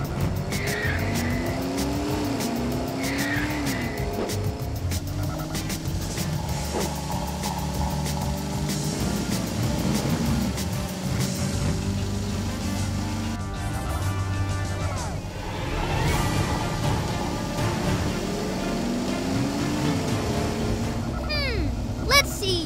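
Dubbed cartoon race-car sound effects: engine revs that glide up and down in pitch, with tire squeals, over background music.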